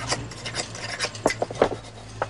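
A sheet of hide being folded and pressed by hand over the hoop of a chenda drumhead: rubbing and scraping with irregular sharp clicks, several close together in the second half.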